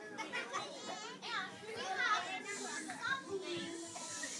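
A crowd of young children talking and calling out over one another, many voices at once.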